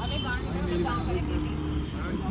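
Several people talking and chattering in the background over a steady low rumble of vehicles.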